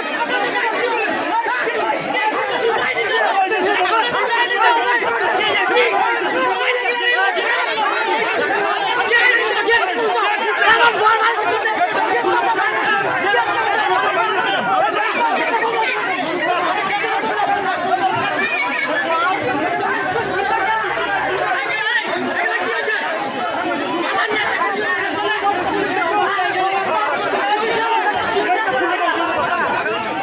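A crowd of many people talking at once: a dense, steady babble of overlapping voices, none standing out.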